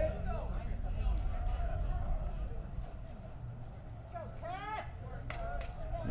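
Ballpark ambience through the broadcast crowd mic: a steady low rumble with faint scattered clicks, and a distant voice calling out about four to five seconds in.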